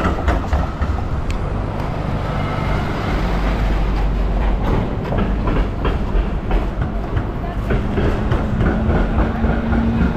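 Melbourne tram running on its street rails: a steady low rumble with repeated clacks of the wheels on the track, and a low hum that comes in near the end, over busy city street noise.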